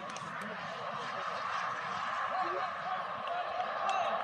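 Faint distant voices of football players and onlookers calling out across the field, over a steady outdoor hiss.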